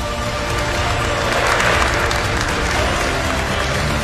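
Audience applauding, swelling in the middle and easing off near the end, over steady background music.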